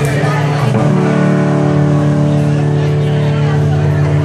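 Live rock band's amplified electric guitar holding a long, steady droning chord that settles in about a second in.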